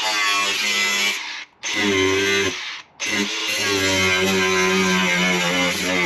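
Cordless angle grinder cutting through the thin sheet steel of a van's rusty body, in three bursts with short stops between. Its motor runs with a steady whine under the rasp of the cut.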